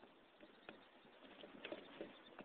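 Near silence: faint outdoor room tone with a few soft, scattered clicks, a little busier past halfway.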